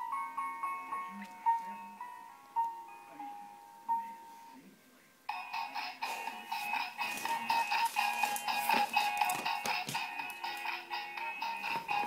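Electronic music played by a talking Princess Cadance toy pony: a simple tune of single notes, joined about five seconds in by a fuller, busier tune.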